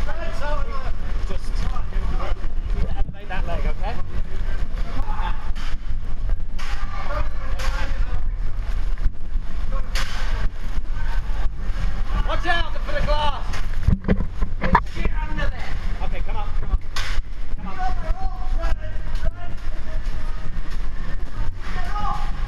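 Steady deep roar of typhoon wind and storm-surge water, with people shouting over it and a few sharp knocks about two-thirds of the way through.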